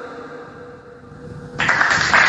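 Low background with a faint steady hum, then about one and a half seconds in a sudden loud burst of hissing, applause-like noise.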